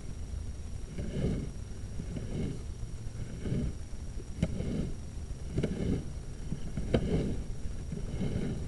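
Sewer camera push cable being fed by hand down a cast iron drain line, in scraping strokes about once a second, with a few sharp clicks near the middle. A faint steady high whine from the camera unit sits underneath.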